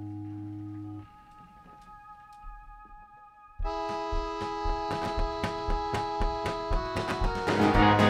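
An acoustic guitar chord rings out and dies away, followed by a short quiet gap with faint held notes. About three and a half seconds in, the song's intro starts: acoustic guitar picked in a steady rhythm over sustained keyboard chords, growing fuller near the end.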